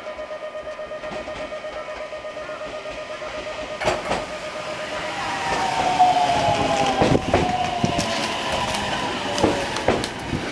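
JR West 521 series electric train pulling in and braking. It gets louder about halfway through as the cars pass close by, with wheels clacking over rail joints and a whine falling slowly in pitch as the train slows.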